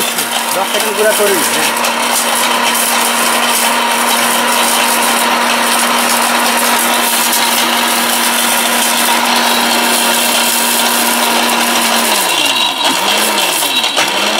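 ORPAT mixer grinder's electric motor running at speed, its steel jar grinding with a loud, steady whir. In the last two seconds or so the pitch falls off in a series of dips as the motor slows.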